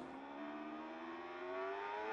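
Racing BMW superstock motorcycle's inline-four engine heard from an onboard camera, its note climbing steadily in pitch as the bike accelerates hard along a straight.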